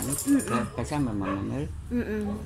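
A young person's voice moaning without words in long, wavering tones.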